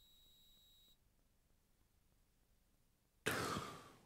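Near silence, then about three seconds in a short, breathy intake of air, a person drawing breath just before speaking.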